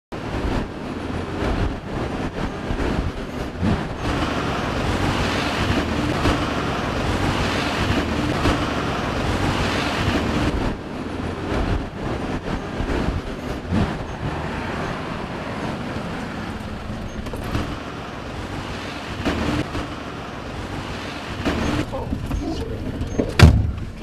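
Road traffic noise with a car engine running, steady throughout. A single sharp knock sounds near the end.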